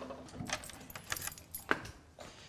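Keys jingling and a door lock being worked: several light metallic clicks as a door is unlocked and opened.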